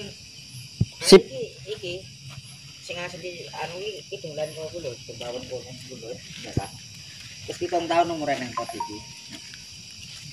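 Crickets chirring steadily in the background, with quiet voices talking on and off and a sharp click about a second in.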